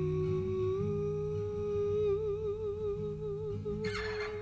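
A woman humming one long held note over fingerpicked acoustic guitar. The note slides up as it begins, steps slightly higher about a second in, and wavers with vibrato in its second half.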